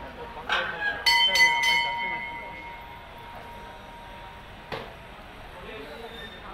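Hanging brass temple bell struck three times in quick succession about a second in, its ringing fading out over the next couple of seconds, over the chatter of a crowd of devotees.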